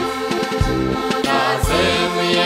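Several diatonic button accordions (heligónky) play a lively Slovak folk tune in full chords over repeated bass notes, with voices singing together.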